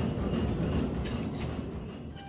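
Steady rumbling background noise with faint clatter, picked up by a phone's microphone in a gym, fading toward the end.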